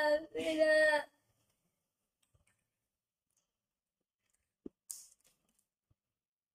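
A child laughing through a held, hummed tone for about the first second, then near silence broken by a faint click and a short hiss near the end.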